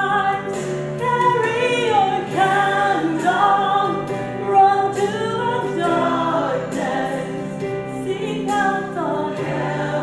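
A woman singing a Christian song solo into a microphone, holding long notes in phrases over a musical accompaniment.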